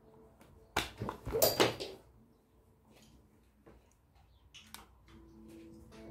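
Sharp clicks and knocks from handling a phone and its charger, loudest in a cluster one to two seconds in. Soft background music comes in near the end.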